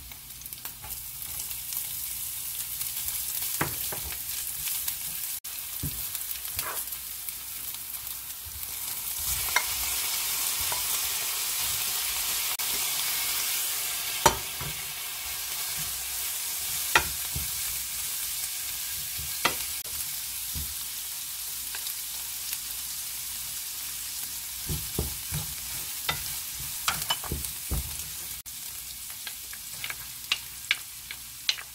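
Garlic, green onion and shrimp sizzling in a frying pan while being stirred, with a wooden spatula knocking and scraping against the pan now and then. The sizzle grows louder from about nine seconds in, and the knocks come more often near the end.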